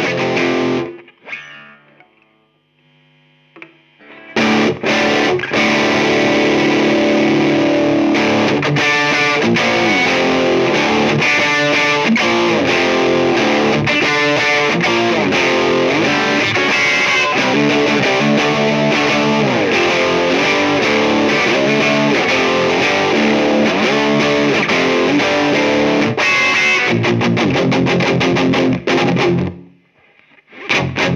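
Electric guitar played through a Walrus Audio Warhorn drive pedal into a Marshall JCM900 amp set on the edge of breakup, recorded through a speaker-cabinet simulator. A phrase rings out and dies away about a second in, followed by a pause of about two seconds. Then a long stretch of driven, distorted riffing stops just before the end.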